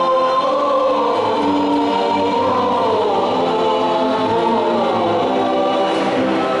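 Church choir singing the closing hymn at the end of Mass, in sustained notes with a melody that rises and falls.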